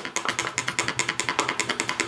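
Buck BuckLite MAX fixed-blade knife rattling loudly inside its nylon sheath as the sheath is shaken, a rapid run of clicks about ten a second. The knife sits loose against the sheath's plastic insert.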